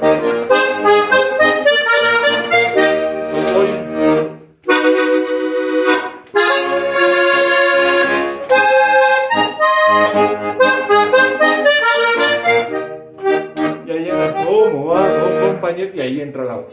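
Hohner Corona III diatonic button accordion playing a quick vallenato melody in chords and runs, with brief breaks about four and a half and six seconds in.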